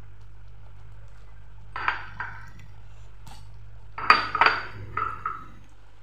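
Utensil clinking and clattering against a metal cooking pan as paneer cubes are added to bubbling masala gravy. A few clinks come about two seconds in and a louder cluster about four seconds in, over a steady low hum.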